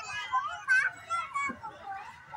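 Young children's high-pitched voices calling and chattering as they play on playground equipment, several at once in short bursts.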